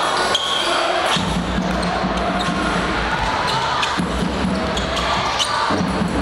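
Live basketball game sound in a large hall: a basketball bounces on the wooden court over the steady, indistinct voices of players and spectators, with a few sharp knocks.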